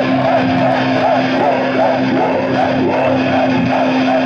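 Live metal band playing a passage without drums: a held low note under a repeating melodic figure.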